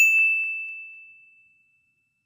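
A single bright chime struck once, ringing on one high tone that fades away over about a second and a half: a logo-reveal sound effect.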